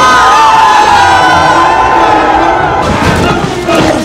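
Several people screaming together in long, held screams that bend slowly in pitch. The screams are loud and tail off near the end.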